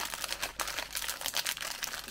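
Small clear plastic bag of Lego parts crinkling and crackling as it is handled and pulled open by hand, a rapid run of small sharp clicks and rustles.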